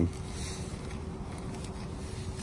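Wind rumbling on the microphone, with faint rustling of the paper wrapping being handled.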